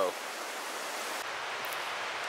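Steady rushing of a fast-flowing river heard from a bridge above it, an even hiss of water whose highest part drops away a little past halfway.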